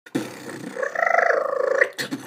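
A beatboxer's voice making a held, pitched vocal sound for about a second, after a few shorter sounds at the start.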